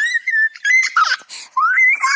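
Smartphone ringtone for an incoming call: a high, whistle-like melody of short gliding notes that climb in pitch.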